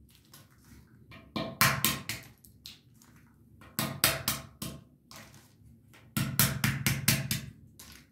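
Walnuts being cracked open with a knife on a cutting board: three bursts of rapid sharp knocks and cracking shell, with quiet pauses between.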